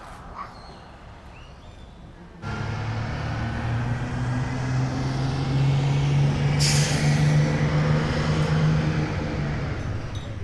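Street traffic noise. A vehicle engine running close by starts abruptly a couple of seconds in and slowly grows louder, with a short burst of hiss about two-thirds of the way through.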